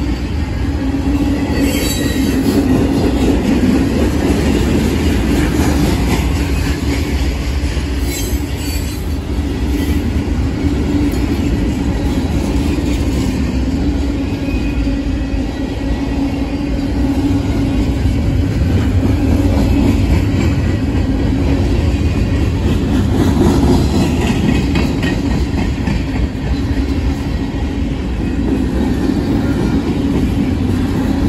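Freight cars of a long mixed manifest train rolling past close by: a loud, steady rumble of steel wheels on the rails that holds for the whole stretch.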